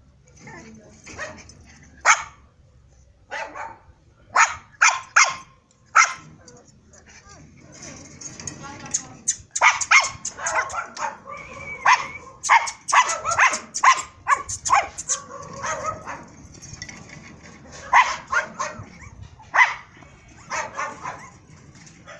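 A litter of Pomeranian puppies yipping and barking in short, sharp calls, a few scattered at first, then quick runs of many yips in the middle and again near the end.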